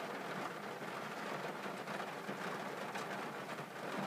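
Steady hiss of heavy rainfall, even throughout with no distinct events.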